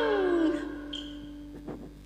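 The end of a cải lương performer's sung-spoken line, falling in pitch and trailing off in the first half-second, over a held note from the accompaniment that fades away. A couple of faint taps follow near the end as it goes quiet.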